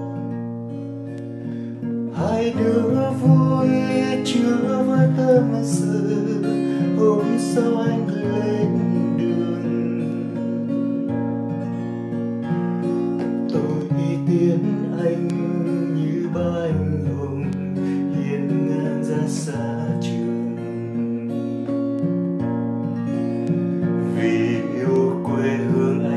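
Acoustic guitar played solo, chords strummed and picked, ringing on between attacks: an instrumental interlude between sung verses of the song.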